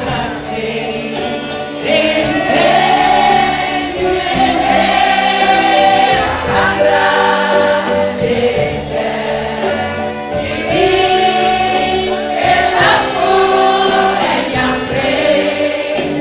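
Live band music with a crowd of voices singing along together; the singing gets louder about two seconds in.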